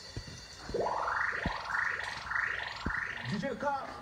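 DJ mix playing: a held chord stops, then four quick rising whoop sweeps follow each other about two-thirds of a second apart, each cut off sharply, with a few low thumps under them. A vocal in Haitian Creole comes in near the end.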